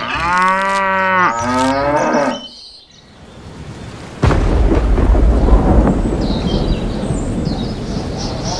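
A cow mooing once in one long call. After a short lull, about four seconds in, a thunderstorm rumble with rain starts suddenly and carries on.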